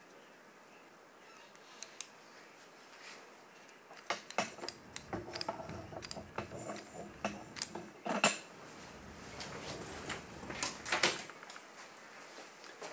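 Metal animal control pole being handled: sharp clicks, knocks and light metallic rattling from its cable noose and spring lock mechanism, starting about four seconds in, with the loudest click near the middle and the clatter dying away shortly before the end.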